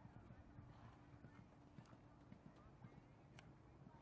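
Faint hoofbeats of a pony cantering, soft irregular thuds, with a faint steady hum underneath.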